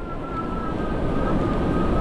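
Engwe L20 2.0 e-bike's electric hub motor whining at a steady pitch while riding at about 15 mph on hard-packed sand, over a low rush of wind and tyre noise.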